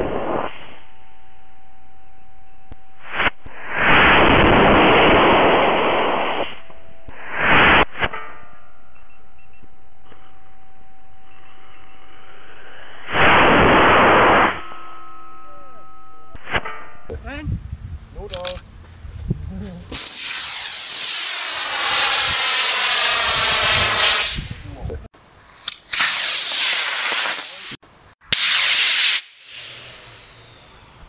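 Amateur rocket motors firing: four bursts of rushing roar, each one to two and a half seconds long, in a muffled recording over a steady hum. Near the end, in a clearer recording, a longer rushing noise that sweeps in pitch, then two short loud bursts.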